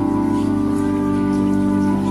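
Organ music: slow, sustained chords held steadily, changing chord twice.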